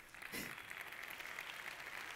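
An audience applauding: a steady, fairly faint patter of many hands clapping that starts about half a second in.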